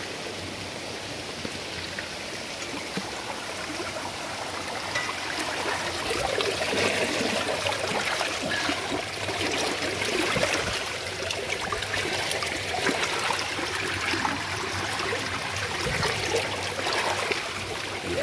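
Shallow creek water running over rocks, with hands splashing in it to clear leaves and debris from the water supply's intake. The splashing grows louder and busier about a third of the way through.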